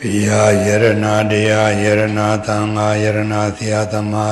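A man's voice chanting a Pali recitation in a steady monotone, each phrase held on nearly one pitch, with short breaks for breath.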